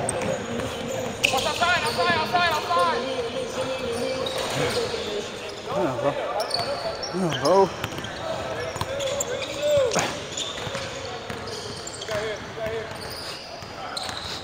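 Basketball dribbling on a hardwood gym floor during a pickup game, with scattered short shouts from players, all echoing in a large indoor gym.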